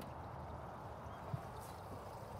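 Quiet steady outdoor background noise with one faint short knock about a second and a half in.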